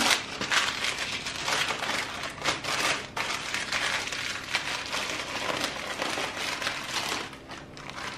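Baking paper being folded and creased by hand around a portion of cooked meat filling, a continuous run of irregular crinkles and rustles.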